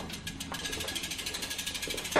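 Road bike's rear freewheel hub ticking as the bike is wheeled along by hand: rapid, even clicking of the hub pawls while the wheel coasts.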